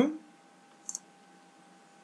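A single short, sharp click of a computer mouse button about a second in, as a sketch dimension is placed.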